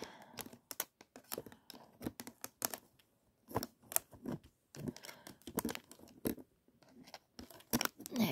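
Handling noise: irregular soft clicks, taps and rubs of fingers on the phone and on the clear acrylic tarantula enclosure, with short pauses.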